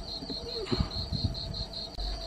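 Steady, high-pitched insect chirping, pulsing about four to five times a second.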